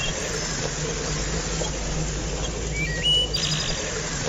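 Jeep engine running low and steady as it comes along a dirt track, with birds chirping over it; a louder bird call a little after three seconds.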